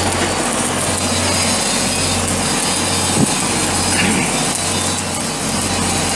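Continuous dense crackling of arc welding over a steady low hum, with a single knock about three seconds in.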